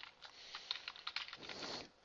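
Computer keyboard being typed on: a rapid, faint run of keystroke clicks, with a short soft rush of noise near the end.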